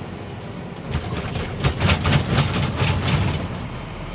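Truck engine and road noise heard from inside the cab while driving, with a louder stretch of low rumbling and rattling knocks from about one to three and a half seconds in.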